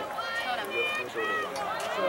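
Spectators talking among themselves at a moderate level, several voices overlapping without clear words.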